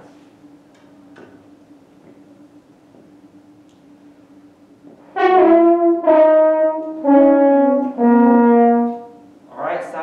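A brass instrument plays a short four-note blues lick: four notes of about a second each, falling step by step, starting about five seconds in. Before it there is only a faint steady low tone.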